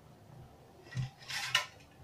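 Kneaded wheat dough handled against steel kitchenware. A soft thump about a second in as the lump is set down on a metal plate, then a brief scraping clatter of the steel bowl.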